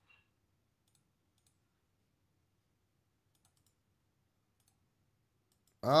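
A few faint, scattered clicks of a computer mouse, separated by near silence, ending with a man's voice exclaiming.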